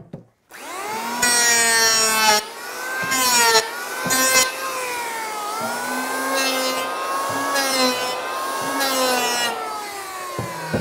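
Handheld Bosch electric planer spinning up about half a second in, then running with a steady whine. In about six short passes its cutterhead shaves the high corners of a board to take out a wobble, each pass louder and rougher as the blades cut.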